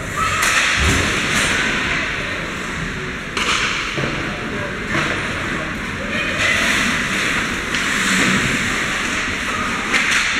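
Ice hockey play in a rink: skate blades scraping the ice and sticks and puck knocking, with several thuds, the strongest about a second in, and distant shouting voices.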